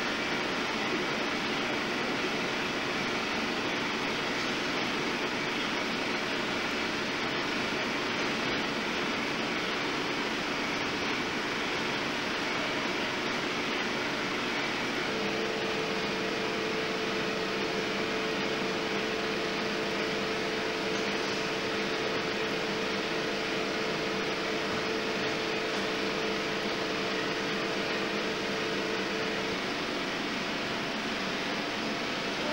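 Steady whir of a 70mm film projector and its film platters running in a cinema projection booth, with fan noise. A steady humming tone comes in about halfway through and stops just before the end.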